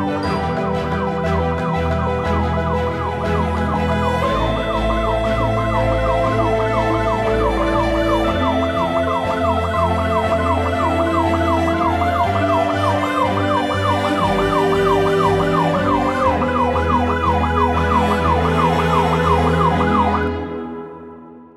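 Film score of sustained low chords, joined about four seconds in by a siren in a fast yelp, rising and falling about three times a second.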